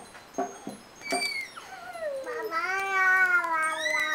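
A child's voice: a few short clipped syllables, then one long high note that slides down in pitch and is held, wavering slightly, for about two and a half seconds.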